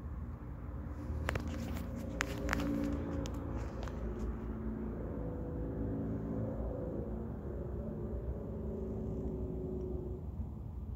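A run of small clicks and taps in the first half, from the phone being handled and pressed against the telescope eyepiece, over a steady low outdoor rumble.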